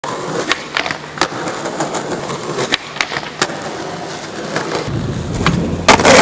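Skateboard wheels rolling on concrete, with a series of sharp clacks from the board hitting the concrete, the loudest just before the end. The rolling turns to a deeper rumble about five seconds in.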